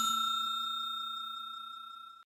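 A bell-like chime sound effect rings on after being struck and fades slowly and evenly, with a faint shimmer.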